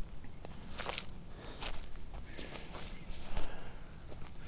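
Footsteps on dry forest litter of pine needles and twigs, a short crunch about every three-quarters of a second.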